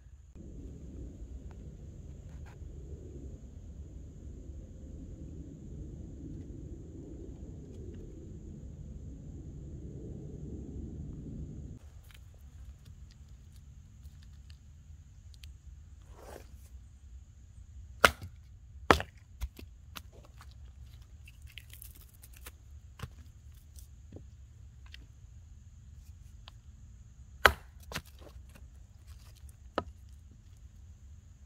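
Hatchet striking a short upright log on a chopping round to split it: sharp wooden cracks, a quick pair and a couple of lighter taps, then another hard strike near the end. Before the strikes there is a stretch of low rumble.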